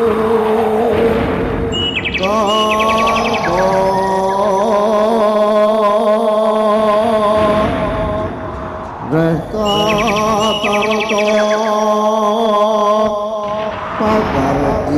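Live East Javanese jaranan music: gamelan-style percussion under a long, held, slightly wavering melody line, which breaks off briefly about nine seconds in and then starts again.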